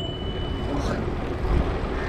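Steady rumble of wind on the microphone and bicycle tyres rolling over brick paving while riding, with a thin high tone that stops about a second in.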